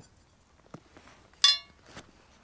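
Titanium spoon giving a single light metallic clink about one and a half seconds in, with a brief bright ring that quickly dies away.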